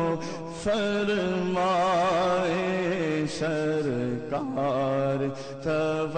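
A man singing an Urdu naat, one long drawn-out ornamented phrase with a wavering vibrato over a steady low drone. There is a short break about four and a half seconds in, and a new phrase begins near the end.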